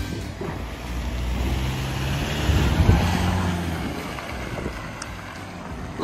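A motor vehicle engine running at low revs, a steady low hum under wind noise on the microphone, louder for a while around two to three seconds in.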